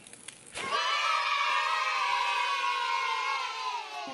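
A single high-pitched scream starting less than a second in, held for about three seconds and slowly falling in pitch.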